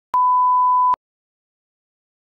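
A single electronic beep: a steady 1 kHz sine test tone lasting just under a second, switched on and off abruptly with a click at each end.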